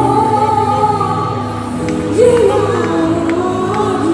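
Live gospel singing: a boy's solo voice carrying a melody over sustained instrumental accompaniment, amplified through a stage sound system.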